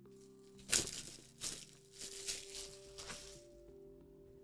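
Plastic shrink wrap crinkling and tearing in several short bursts as it is pulled off a cardboard product box, over quiet background music.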